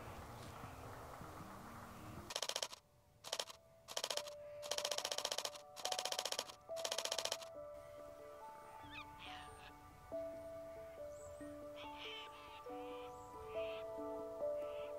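Several rapid bursts of camera shutter clicks from a Canon R7 firing in high-speed continuous mode, between about two and seven and a half seconds in, over soft background music of held notes.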